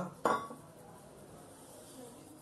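A small stainless-steel bowl clinks once, sharply, about a quarter second in, followed by faint room tone.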